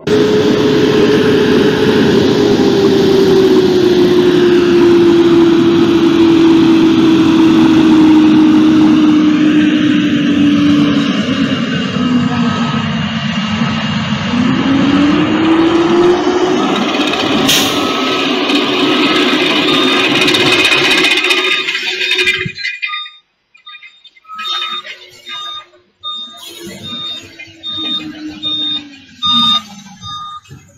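Heavy earth-moving machinery on a road construction site, heard in a phone recording: a loud engine drone with a strong rushing noise, its pitch sinking slowly and then rising again. Near the end the drone cuts off, leaving fainter scattered noises and a repeated high beep.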